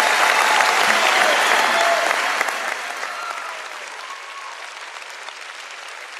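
A large audience applauding, with voices cheering over the clapping. The applause is loudest for the first two seconds or so, then fades gradually.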